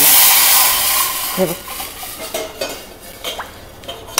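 Chickpea cooking water poured into a steel pot of hot ghee tempering (phodni) with garlic, chilli and cumin, giving a loud sudden sizzle that fades away over a couple of seconds.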